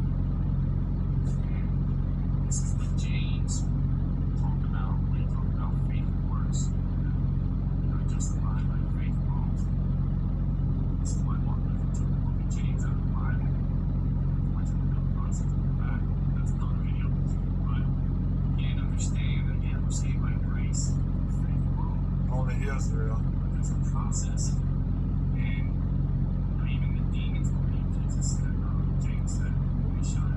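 A steady low hum runs throughout as the loudest sound. Over it are faint, indistinct bits of speech from a video playing on a phone's speaker, and small ticks.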